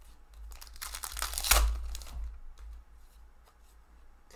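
A foil trading-card pack being torn open by hand: one crinkling rip starting about a second in, loudest in the middle and fading out after about a second and a half.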